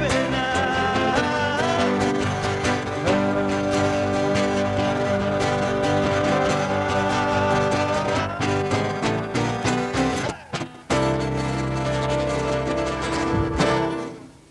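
A live acoustic pop song: male vocals over strummed acoustic guitars and keyboard. The music breaks off briefly about ten and a half seconds in, then a held chord dies away near the end.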